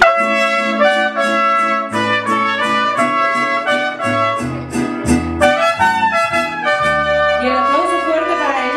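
Mariachi band playing a song, trumpets carrying the melody over a moving bass line; the music starts sharply on the count-in.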